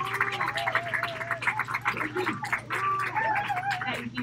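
Audience applauding, with voices calling out over the clapping. The applause dies down near the end.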